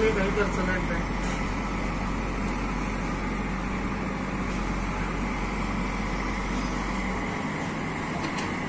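Diesel engine of a JCB 3DX backhoe loader, a Kirloskar build, running steadily under load as the backhoe digs.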